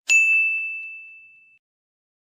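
A single bright chime-like ding: one clear ringing tone that starts sharply and fades out over about a second and a half.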